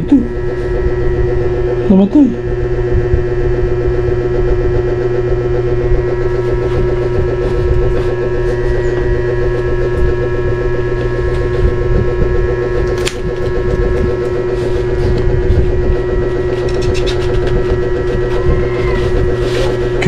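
A steady, loud hum made of several fixed pitches, unchanging throughout, with one sharp click about 13 seconds in.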